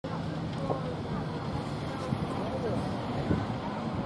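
Indistinct chatter of several people over a steady low rumble, with wind buffeting the microphone.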